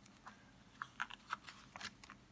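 A picture-book page being turned: faint, short paper crackles and clicks, several of them from about a second in.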